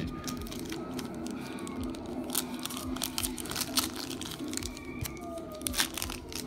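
Plastic wrapper of a football trading-card pack crinkling and tearing as it is opened by hand, a stream of irregular sharp crackles, over a steady low hum.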